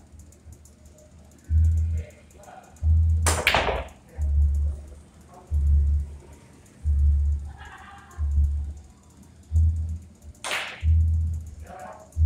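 Music with a steady bass beat about every second and a quarter. Over it come two sharp clacks of pool balls: a cue strike and ball collision about three seconds in, and another clack near the end.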